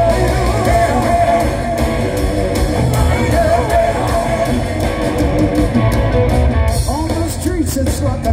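Live rock band playing loud through a concert PA: a lead electric guitar line over drums, bass and keyboards.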